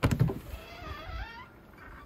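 2021 Lance 825 truck camper entry door's paddle latch clicking open, followed by a wavering squeak as the door swings open.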